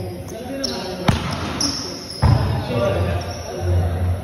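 A sharp thump about a second in, then a louder burst of noise just after two seconds, over background voices in a large, echoing room; short high squeaky tones come and go.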